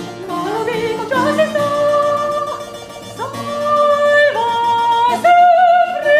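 A woman's operatic voice singing a baroque aria in a series of long held notes, the last with a wide vibrato, accompanied by a harpsichord.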